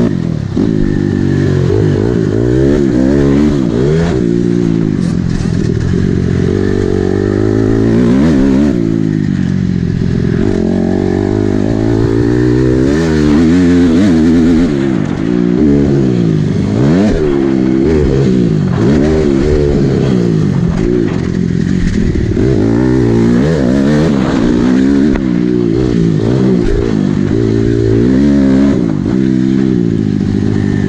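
2007 Honda CRF250R's four-stroke single-cylinder engine under hard riding on a dirt track, its pitch repeatedly winding up and dropping off as the throttle is opened and closed through corners and straights.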